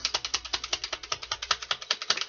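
A deck of tarot cards being shuffled in the hands: a rapid, even run of card clicks, about fifteen a second.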